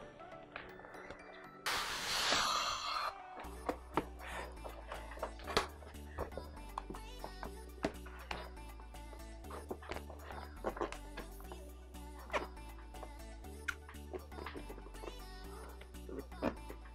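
A pump spray bottle sprays a short hiss of water about two seconds in. After that, background music with a steady bass line and beat plays.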